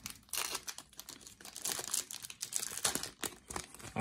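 A Yu-Gi-Oh booster pack's foil wrapper being torn open and crinkled by hand, a continuous run of crackling rips and rustles.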